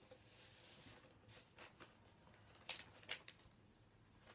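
Near silence: faint rustling of a vinyl record and its paper inner sleeve being handled, with two soft clicks close together about three seconds in.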